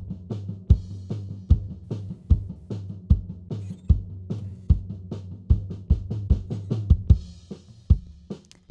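Drum-track playback from a Cubase session: a kick drum about every 0.8 seconds with snare and lighter hits in between, a steady beat.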